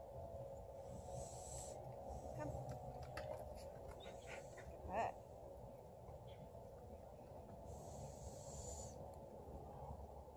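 A goat bleats once, briefly, about halfway through, over a faint steady background hum.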